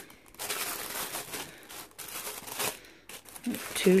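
Tissue paper crinkling and rustling in uneven crackles as it is pulled open and its sticky sticker seals are peeled free.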